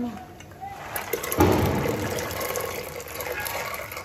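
Soaked kidney beans tipped from a steel bowl into water in an aluminium pressure cooker: a rush of splashing starting about a second in, loudest at first and then tapering off.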